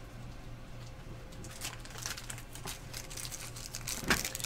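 Faint rustling, crinkling and light clicks of things being handled, starting about a second and a half in and growing busier, over a steady low hum.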